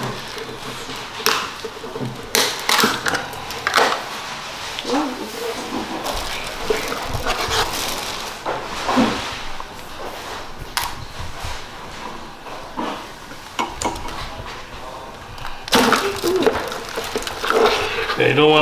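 Plastic bag crinkling and rustling, with scattered clicks and knocks of hard crab shells and claws against the sink and pot as live blue crabs are pulled out of the bag by hand.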